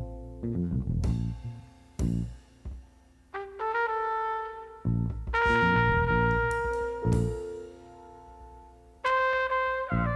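Instrumental music: long held brass-like notes over short, punchy low hits.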